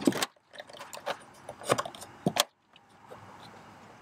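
Clips of a plastic engine air filter housing being snapped shut over a new air filter: a run of sharp clicks and rattles over about two and a half seconds, then only a faint steady background.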